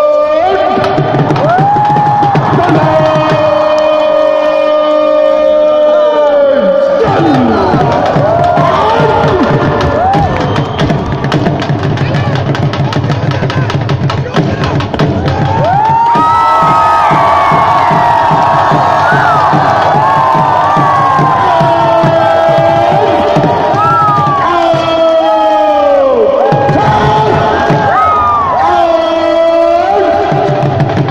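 Large stadium crowd cheering and chanting. Long drawn-out held calls run for about six seconds at the start and come back near the end, each breaking off into a surge of many shouting voices.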